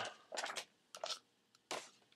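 Three short bursts of rustling handling noise, as objects are moved about in a search.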